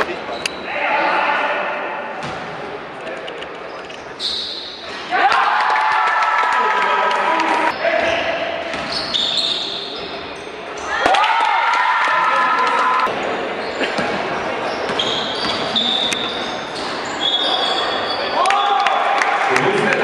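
Basketball game in a large gym hall: a ball bouncing on the hardwood court, with voices echoing in the hall.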